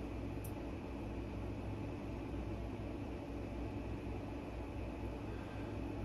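Steady low hum with an even hiss over it: the constant background noise of a room with a machine running.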